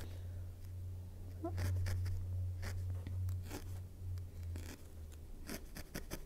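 Barbed felting needle poking repeatedly through wool into a foam felting pad, giving soft scratchy pokes at an uneven pace over a steady low hum.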